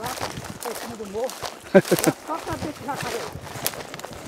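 Faint, indistinct talking, with the scuffing of footsteps and rustling through dry grass and scrub.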